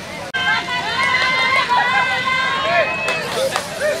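Several people talking at once, overlapping voices in conversation. About a third of a second in there is an abrupt cut, after which the voices are louder.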